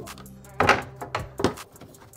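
Wooden boards knocking against each other and the table as they are handled: about four knocks, the loudest a little under a second in.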